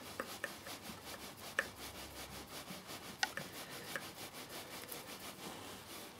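Faint rubbing and a few light clicks as a nylon bolt and a clear acrylic sheet are handled, the bolt coming out of a freshly tapped M3 thread.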